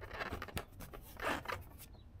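Motorcycle seat being pressed and slid into place over the tank and rear fender, making a few short scraping rubs as it seats.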